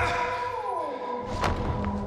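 Film trailer score and sound design: a heavy thud at the start over a held high tone, a tone sliding steeply down in pitch, then a second sharp hit about a second and a half in.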